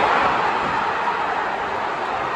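Football stadium crowd noise: a loud, steady din of many voices reacting to a goal just scored, easing slightly over the two seconds.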